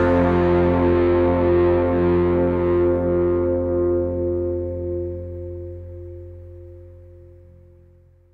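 The closing chord of a country band's song, acoustic guitar over a held low bass note, ringing on and fading away over several seconds until it is gone at the end.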